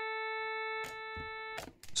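Steady buzzy sawtooth test tone from a signal generator, played through a summing mixer. About halfway through there is a click as a jack cable is pulled from the mixer's inputs; the tone drops a little and then cuts off suddenly about three-quarters of the way in.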